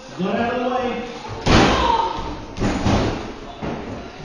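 Two heavy impacts in a pro wrestling ring, bodies hitting the ring or each other. The louder comes about a second and a half in and a second follows about a second later, with voices calling out around them.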